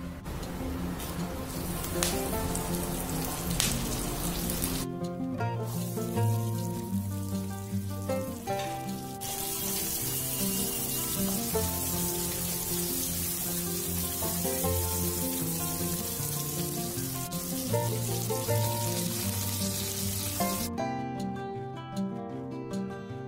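Oil sizzling in a steel wok as whole spices and then shallots fry, under background music. The sizzle drops away for a few seconds about five seconds in, then returns.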